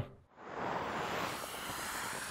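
A steady rushing hiss with no engine note, fading in shortly after the start.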